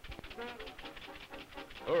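Cartoon sound effect of an old open car's engine chugging along, a fast even run of puffs at about ten a second.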